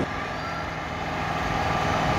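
Steady street traffic noise: a low, even hum of vehicles running nearby, with no sudden sounds.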